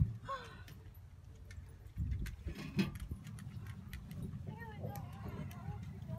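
Low, steady rumble with scattered knocks and light rattling: a wheelbarrow with a plastic tray being pushed over grass, heard from a phone held inside the tray. Faint voices come and go.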